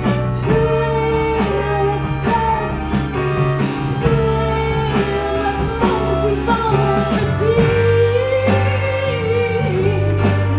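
Live band playing: Nord Stage electric piano, violin, clarinet, electric bass and drum kit, with long held melody notes over a steady bass line and drum beat.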